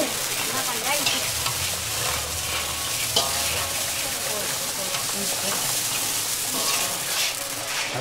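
Thaen mittai dough balls sizzling steadily in a large iron kadai of hot oil as a long metal skimmer stirs them, with a few scrapes and clinks of the skimmer against the pan.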